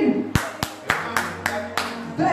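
About six sharp hand claps in a steady rhythm, roughly three a second.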